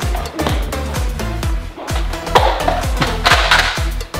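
Background dance music with a steady kick-drum beat, about two beats a second. Two short noisy bursts rise over it in the second half.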